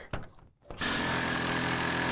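Ryobi cordless drill starting up a little under a second in after a short click, then running steadily with a high-pitched whine.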